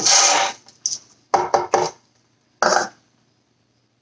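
Raw sunflower seeds pouring from a bowl into a plastic blender jar in a short rush, followed by three quick knocks and one more about a second later as the upturned bowl is tapped against the jar to empty it.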